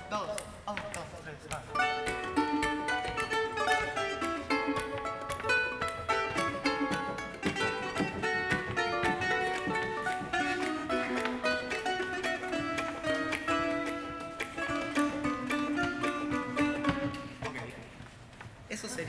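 Three plucked-string parts played together: a resonator guitar played flat on the lap as a Hawaiian guitar carries the melody, while ukuleles add a counter-melody and a second accompanying line. It is a lively run of notes that fades out shortly before the end.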